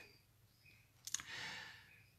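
A pause in speech: a faint mouth click a little over a second in, followed by a soft breath drawn in.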